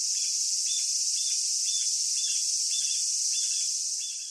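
Steady chorus of insects, an even high-pitched buzz, with a short chirp repeating about twice a second.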